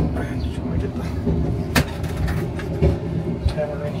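Passenger train running, heard from inside a carriage: a steady low rumble, with one sharp click a little under halfway through and a few smaller knocks after it.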